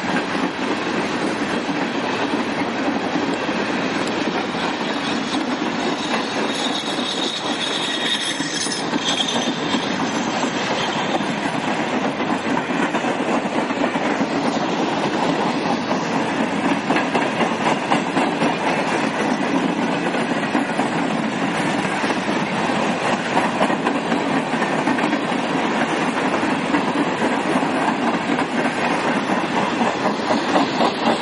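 Freight train of hopper cars rolling past close by: a steady rumble and clatter of steel wheels on the rails, with a faint high wheel squeal about seven to ten seconds in. The clacking over rail joints turns more regular and distinct in the second half.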